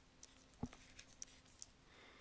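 Near silence with faint ticks and taps of a stylus writing on a tablet, the clearest a soft knock a little after half a second in.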